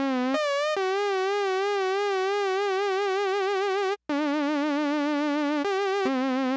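Rob Papen Predator software synthesizer playing sustained, bright saw-wave notes with an even vibrato from its pitch mod LFO. The notes change pitch several times, with a short break about four seconds in.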